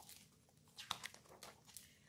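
Near silence with a faint rustle and a few soft clicks of a picture-book page being turned, strongest about a second in.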